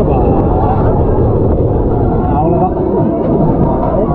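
Loud wind rushing over the microphone as a swinging amusement ride moves, with riders' voices and shouts over it.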